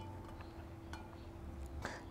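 Quiet room tone with a steady low hum, and a faint light click about a second in: salinity tester pens knocking against a glass beaker as they are held in the test solution.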